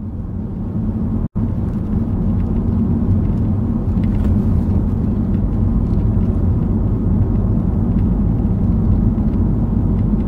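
Car cabin noise while driving: a steady low engine and road rumble heard from inside the car. It builds up over the first couple of seconds and cuts out for an instant about a second in.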